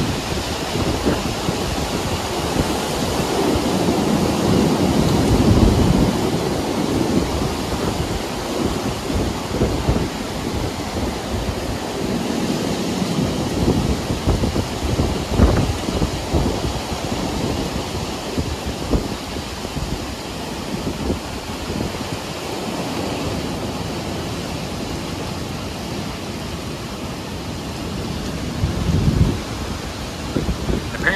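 Heavy rain and strong, gusting thunderstorm wind rumbling on the microphone, swelling to its loudest about five seconds in.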